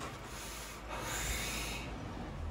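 A person drawing on a cigarette, then blowing the smoke out in a longer, louder breathy exhale about a second in.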